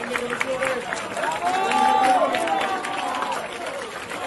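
A large crowd of students chanting together, stadium-style, the voices joining in one long rising-and-falling chanted phrase that is loudest about two seconds in, with scattered clapping.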